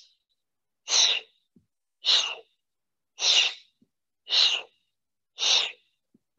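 A woman breathing out forcefully through the mouth with a hissing 'sh' sound, five times about a second apart, one breath on each leg switch of a core exercise.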